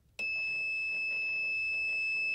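The Connex Amazing Alarm System toy's electronic alarm buzzer sounding one steady, high-pitched tone. It starts a moment in, just after the kit is switched on.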